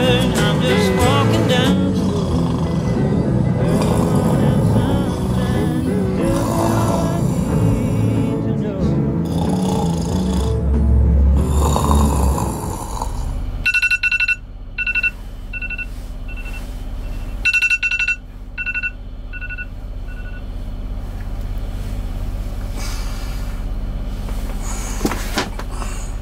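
Background music for roughly the first half, then a phone alarm beeping: two runs, each a long beep followed by shorter, fading beeps. A steady low machinery hum from the boat's cabin runs under the alarm.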